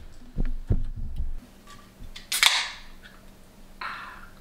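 A few dull knocks from handling the refrigerator and a drink can, then an aluminium can of carbonated drink cracked open about two and a half seconds in, a sharp pop with a short fizzing hiss.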